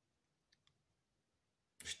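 Near silence: room tone in a pause, with two faint small clicks about half a second in and a man's voice starting near the end.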